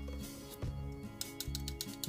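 Light metallic taps of a thin metal blade against the aluminium barrel of a stylus pen, in a quick series mostly in the second half. The clinking shows that the pen's body is metal (aluminium), not plastic.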